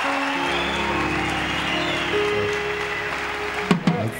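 Church band music: a keyboard holds sustained chords with a low bass note coming in about half a second in, over crowd noise from the congregation. A few sharp drum hits sound near the end.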